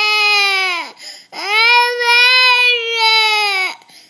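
A toddler crying in long, loud wails: one wail ends about a second in, followed by a quick gasp for breath and then a second long wail that drops in pitch as it trails off near the end.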